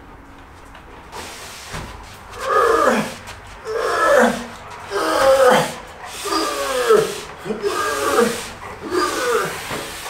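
A dog giving a series of about seven drawn-out howling calls, roughly one a second, each sliding down in pitch.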